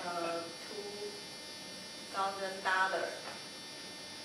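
A person's voice speaking a few short phrases, over a steady electrical buzz and hum that runs beneath the whole recording.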